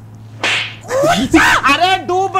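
A short burst of noise about half a second in, then a person's laughter and an exclamation.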